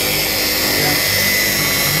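Dual-action polisher running steadily on speed setting three, its spinning foam pad working polish across car paint with a constant electric whine.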